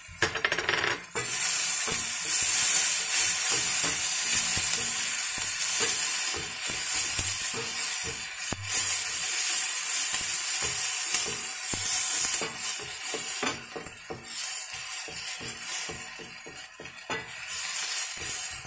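Chopped onion and aromatics sizzling in hot oil in a wok, with a spatula stirring and scraping against the pan in many short clicks. The sizzle starts loud as the food hits the oil and fades somewhat in the last few seconds.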